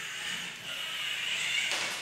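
Geared DC motors of a Balanduino self-balancing robot whirring steadily as it drives and balances, with a short knock near the end.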